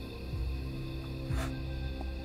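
Tense horror-film score: sustained low notes held under a deep pulse that comes about once a second, with a short hissing swell in the middle.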